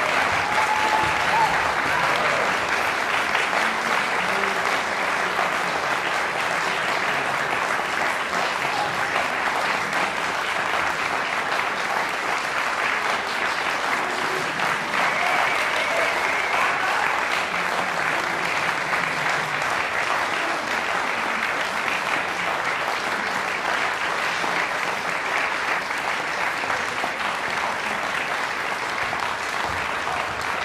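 Audience applauding steadily, a dense even clapping from a full hall.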